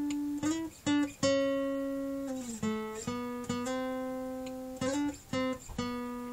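Acoustic guitar playing a single-note solo phrase, mostly on the G string, one note at a time with each note left to ring. The notes are joined by slides, with a clear slide down in pitch about halfway through.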